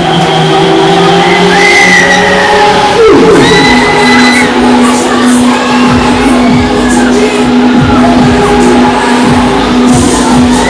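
Loud music playing from a Break Dancer fairground ride's sound system, with a sliding drop in pitch about three seconds in, and riders cheering over it.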